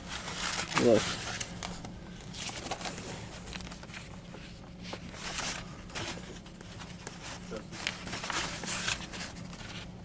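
Comic books in plastic sleeves being handled and flipped through: soft, scattered paper and plastic rustles over a steady low hum.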